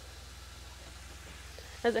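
Thin stream of pink RV antifreeze running from a kitchen faucet into the sink, a faint steady splashing, over the low steady hum of the RV's water pump drawing the antifreeze through the lines.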